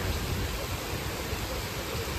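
Heavy downpour: a steady, even hiss of rain.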